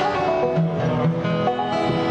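Live bluegrass string band playing: plucked notes from mandolin, banjo and guitar.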